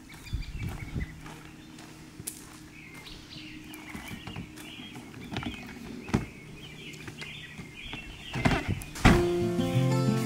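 Birds chirping over faint steady music, with scattered knocks and thumps from a hard-shell suitcase being loaded into a car trunk and a louder thump near the end as the trunk is shut. Strummed acoustic guitar music comes in loudly just before the end.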